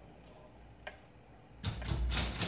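Robotic kinetic marimba's mechanism giving two isolated clicks, then a rapid clatter of strikes starting about one and a half seconds in as the instrument begins to play.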